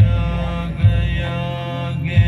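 Devotional music played over loudspeakers: a long-held chanted mantra over a steady drone. Deep bass hits come at the start and again just under a second in.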